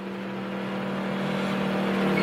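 A small portable generator running with a steady hum that grows gradually louder.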